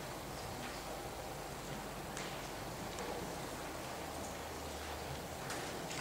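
Quiet hall room tone, with a few faint brief clicks and rustles.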